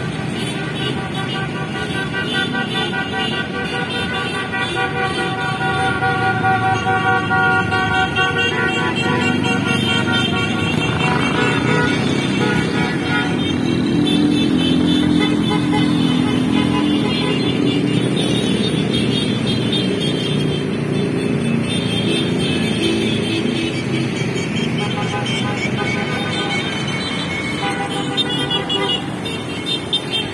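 A procession of motorcycles and cars passing along a road, engines running, with horns tooting.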